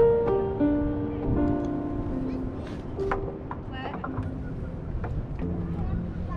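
Cello played with the bow: slow, held notes in a melody that moves mostly downward, thinning out in the middle and picking up again near the end, over low wind rumble on the microphone.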